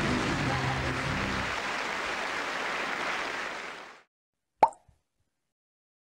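A closing jingle ends about a second and a half in over steady applause, which fades out by about four seconds; after a short silence comes a single sharp pop sound effect.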